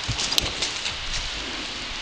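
A donkey's hooves knocking and scuffing on stony, brushy ground as it scrambles on a steep slope, several short knocks in the first second, with twigs and dry leaves rustling.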